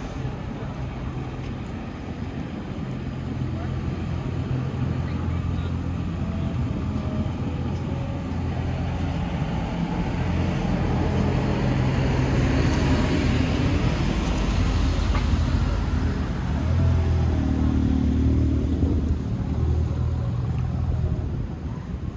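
Street traffic: a motor vehicle engine running close by with a steady low hum. The traffic noise swells in the second half as a vehicle passes, then drops near the end.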